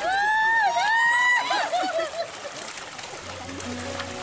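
Water splashing and churning as a packed crowd of carp thrash at the surface for food, with high-pitched voices exclaiming over it during the first two seconds.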